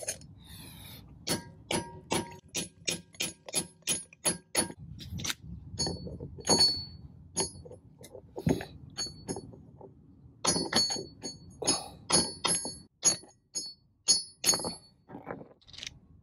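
Hammer blows on a steel drift driving a frozen wheel-bearing race into a heated disc-brake hub, each strike a ringing metallic clink. There is a quick run of about three blows a second, a few spaced strikes, then another fast run, as a race that was going in crooked is evened out.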